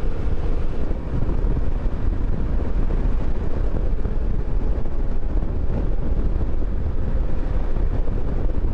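Riding noise on a Suzuki V-Strom 650 motorcycle: steady wind rushing over the microphone, with the V-twin engine running underneath at a constant cruise.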